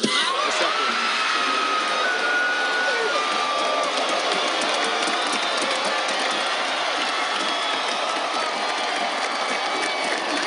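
Large crowd cheering, screaming and whooping, breaking out suddenly at the start and holding at a steady loud level, with high shrieks and whistles over the roar of voices.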